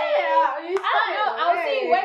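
Two women laughing and exclaiming together, with a couple of sharp hand claps or slaps.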